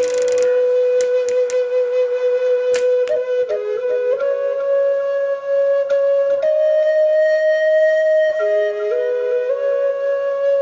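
Flute music: slow, long-held notes that step up and down between a few neighbouring pitches, with a few short clicks in the first three seconds.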